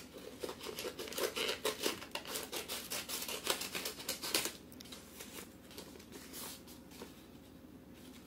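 Scissors cutting through a sheet of paper folded into several layers: a quick run of snips that stops about halfway through.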